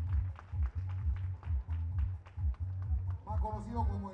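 Upbeat music with a steady, heavy bass beat and a regular crisp percussion tick over it. A voice comes in near the end.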